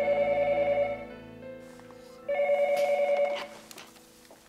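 Desk telephone ringing twice: two trilling electronic rings of about a second each, a little over two seconds apart.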